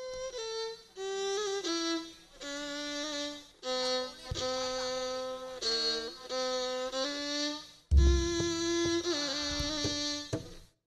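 Javanese rebab (two-string bowed spike fiddle) playing a solo melodic opening of held notes that step up and down from one to the next, the introduction to a ladrang. About eight seconds in, a deep drum stroke comes in under it.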